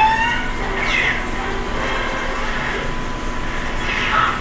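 Steady road and engine noise inside a moving car.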